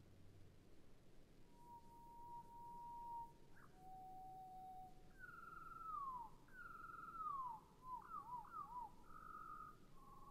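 Faint, clear whistled notes over a soft hiss. A long steady note about a second in is followed by a lower held note, then two long downward-sliding notes, quick rising-and-falling notes and a buzzy held note near the end.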